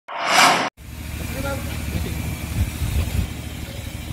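A short whoosh at the very start, then outdoor background noise with a low rumble and faint voices.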